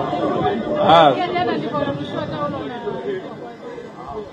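Indistinct chatter of several people talking, one voice rising louder about a second in.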